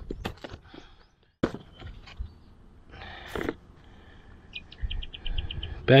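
Handling noise from the foam flying wing: scattered clicks and knocks, a sharp click about a second and a half in, and a short rustling scrape around three seconds in as the hatch cover is worked open. A little after halfway, a quick run of about ten high, evenly spaced chirps sounds over it.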